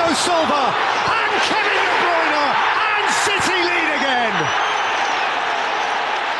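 Football stadium crowd roaring and cheering a goal, a dense steady roar with individual shouts falling in pitch over it and a few sharp knocks.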